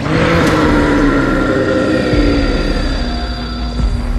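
A sudden impact sound effect at the start, then a sustained rumble with slowly falling tones, over background music.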